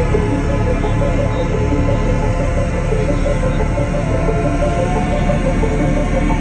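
Loud live electronic music through a concert sound system, heard from within the crowd: a steady, heavy bass with a short synth note repeating at an even pace.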